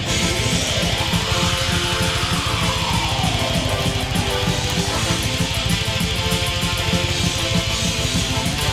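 Electric guitar playing a fast heavy-metal part, picked rapidly, over full music with quick steady low beats.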